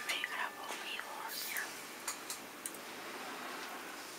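Faint low muttering voice, then a few light clicks from a tape measure being handled against a table-saw blade and fence.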